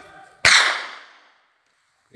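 One sharp whip crack from a ploughman driving a team of plough cattle, loud and sudden about half a second in, trailing off over about a second.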